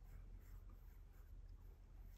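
Faint scratching of a pencil drawing a curved line on paper.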